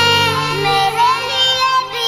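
A child singing an Urdu Ramadan nasheed, holding long notes that waver in pitch without clear words, over a low steady backing that fades out within the first second.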